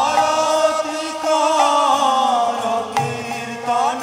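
Devotional kirtan: a man sings a gliding, chant-like melody over a harmonium's held chords. A single sharp strike comes about three seconds in.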